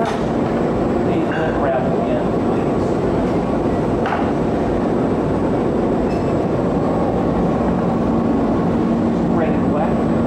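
Steady rushing noise with a constant low hum from the hot shop's gas-fired glory hole and furnace burners and their blowers. There is a brief sharp sound about four seconds in.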